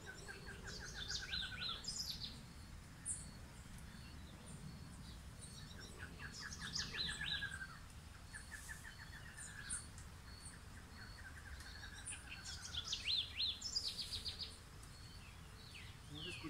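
Several wild birds singing together: a trill of quick falling notes repeats several times, with higher chirps and whistles over it and a faint steady high tone beneath.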